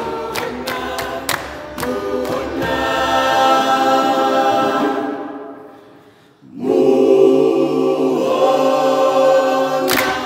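A cappella choir singing with hand claps. The clapping stops after about two seconds; a held chord swells, then fades away at about six seconds. A new held chord with a deep bass line comes in, and the clapping starts again at the end.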